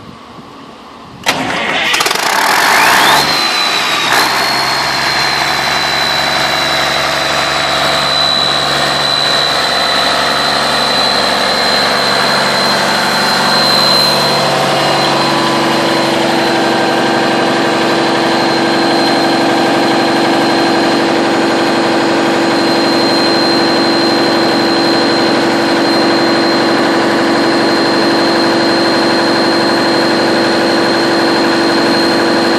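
Cummins NTA855G3 turbocharged six-cylinder diesel of a 400 kVA generator set being started: it cranks and fires about a second in, catches within a couple of seconds, then settles into a steady run with a high whine over the engine note.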